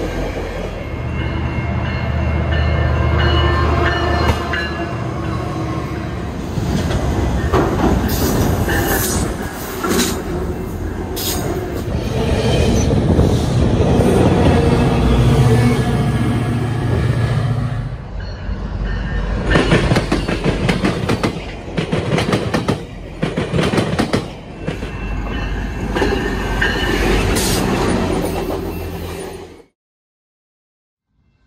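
GO Transit commuter train passing: bi-level passenger coaches rolling by with wheels clacking over rail joints over a low diesel locomotive drone. The sound changes abruptly a little past halfway and cuts off just before the end.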